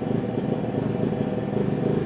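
Steady low mechanical rumble, like a motor or engine running, unchanging throughout.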